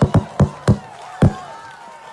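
Feet stomping hard on a stage floor: a burst of heavy, irregular thuds, five in the first second and a half, the last one the loudest.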